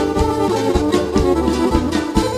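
Instrumental Pontic folk music: a bowed Pontic lyra carrying the melody over held notes, with keyboard accompaniment and a steady low beat a few times a second.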